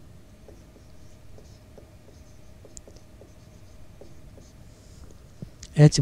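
Whiteboard marker writing on a whiteboard: faint short strokes, over a faint steady hum.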